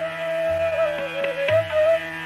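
Bansuri (Indian bamboo flute) playing a long, held melody line that bends gently in pitch, over a steady drone, with a few low tabla strokes underneath, in Hindustani classical music.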